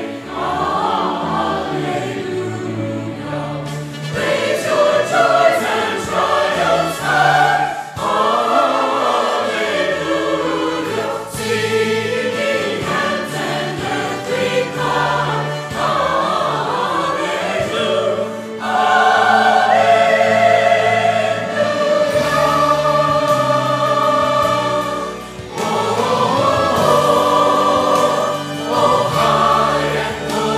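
A small mixed church choir of men's and women's voices singing a hymn in parts, phrases held and changing, with short breaths between lines.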